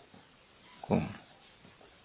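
Felt-tip marker scratching faintly on paper as a word is handwritten, with one short spoken word about a second in.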